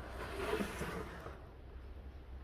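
Soft rustling scrape of a plastic composting toilet being handled and slid across a tabletop, loudest in the first second and then fading, over a faint low rumble.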